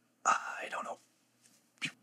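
A man's voice: one short, unclear, breathy utterance, then a brief sharp sound just before the end.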